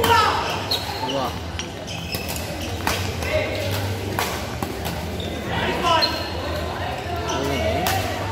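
Badminton rally: rackets strike the shuttlecock again and again, sharp cracks spaced about a second apart, in a reverberant hall. Voices sound in the background.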